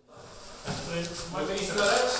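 Indistinct voices of people talking among themselves in a room, over a steady hiss of rustling and handling noise.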